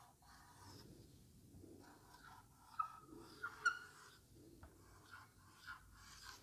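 A few short, faint squeaks of a marker writing on a whiteboard, bunched about three seconds in; otherwise near silence.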